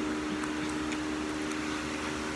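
A steady mechanical hum with a constant low tone, and a few faint ticks.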